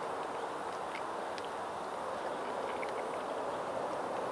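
Steady outdoor background noise, an even hiss, with a few faint light clicks.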